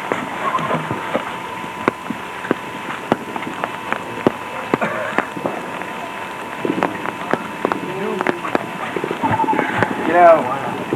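Faint, indistinct voices, with frequent sharp irregular clicks and crackles over a steady high-pitched hum.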